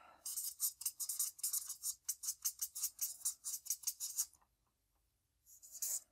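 Marker pen writing on a flip chart: a quick run of short scratchy strokes for about four seconds as a word is written, a pause, then a few more strokes near the end as a line is drawn.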